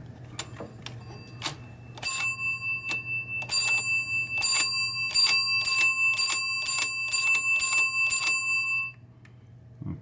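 Bell of a 1972 Williams pinball match unit (the unit that also serves as the 10-point chime) ringing under repeated strikes, about two a second for some seven seconds, each strike ringing on, then stopping suddenly. Light mechanical clicks from the unit come first.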